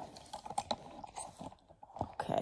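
Handling noise of a phone being repositioned against pillow and bedding: soft rustling with irregular small clicks and crackles.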